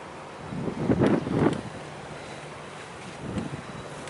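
Wind buffeting the microphone over the open sea, with a loud rushing gust about a second in and a weaker one near three seconds, over a steady low hum.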